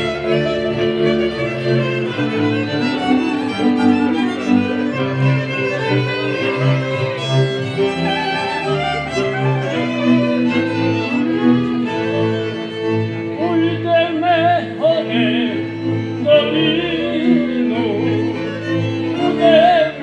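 Moravian cimbalom band playing a folk tune, led by fiddles over double bass, cimbalom and clarinet. A man's voice comes in singing over the band about two-thirds of the way through.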